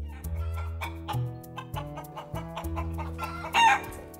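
Domestic chickens calling over background music with steady held notes; one louder, short call about three and a half seconds in.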